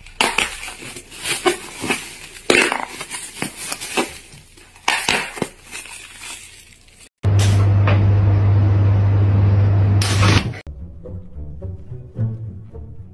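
Thin foil sheet crinkling and crackling in irregular bursts as hands handle it. About seven seconds in this gives way to a loud, steady low hum lasting about three seconds, and then music with plucked bass notes begins.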